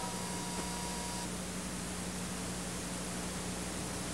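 Steady hiss with a low, steady hum underneath, and a faint high tone that stops about a second in: the background noise of an old analogue videotape transfer with no programme sound.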